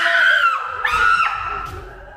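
A high-pitched scream in two long cries, the second holding a steady pitch before fading out.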